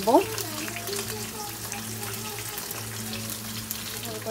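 Fish frying in hot oil in a pan: a light, steady crackle of sizzling over a low, steady hum.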